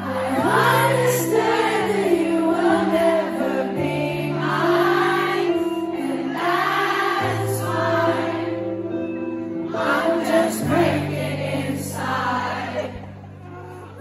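Live pop ballad: sustained keyboard chords changing every few seconds under singing from many voices, the crowd singing along, heard from within the audience. The singing drops away briefly near the end before the next phrase.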